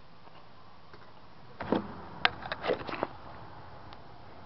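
A short run of metal clicks and knocks from a screwdriver against the axle nut and hub, starting about halfway through, with one sharp click among them.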